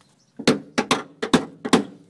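A quick run of about seven sharp metal knocks, a few tenths of a second apart, as hand tools work at a seized rear leaf-spring shackle bolt to break it free.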